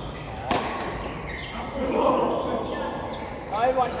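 Badminton rackets striking a shuttlecock in a doubles rally: two sharp smacks, about half a second in and again near a second and a half, with players' voices calling out in between and near the end.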